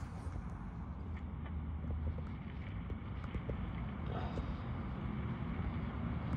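Steady low outdoor rumble with a few faint, scattered clicks.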